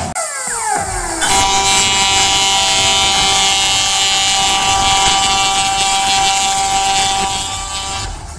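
About a second of falling, whistle-like glides, then a loud, steady, horn-like blare made of many held tones. It holds for about six seconds and fades near the end.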